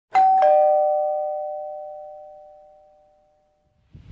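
Two-note ding-dong doorbell chime: a higher note, then a lower one a fraction of a second later, both ringing on and fading away over about three seconds.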